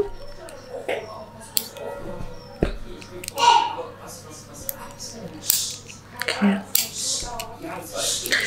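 A red dog collar and leash being handled and fastened: small sharp clicks from the metal buckle and fittings, with short rustles of the strap being pulled through the loop.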